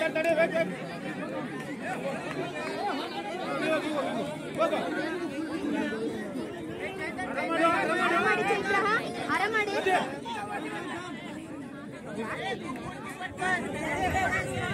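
Crowd of spectators chattering and calling out, many voices overlapping.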